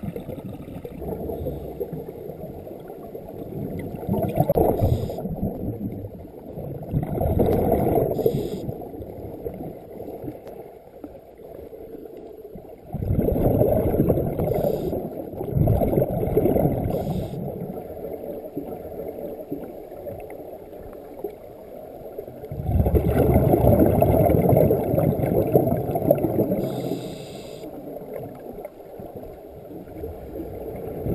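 Scuba regulator breathing heard underwater: muffled surges of exhaled bubbles lasting a few seconds each, about every five to ten seconds, with short hisses of inhaled air between them.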